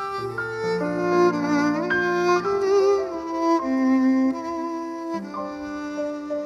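Violin and grand piano playing an instrumental duet: the violin carries a slow, legato melody of held notes with vibrato over sustained piano chords.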